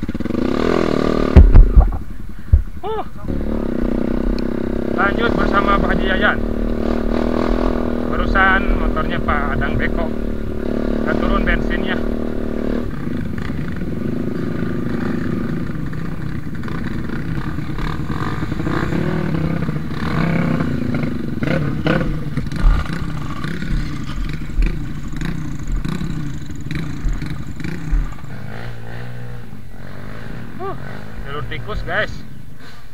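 Trail motorcycle engines running at low revs on a dirt climb, with people's voices over them; a couple of loud knocks come near the start, and the engine note holds steady until about halfway through, then changes.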